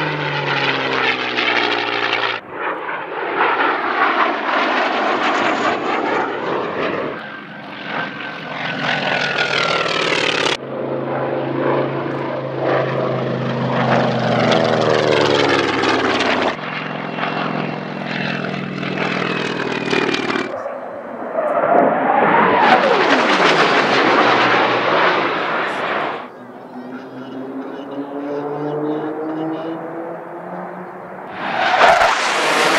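A series of airshow fly-bys by propeller-driven warbirds, including a P-51 Mustang and a TBM Avenger, spliced into short clips with abrupt cuts every few seconds. In each clip the engine falls or rises in pitch as the plane passes.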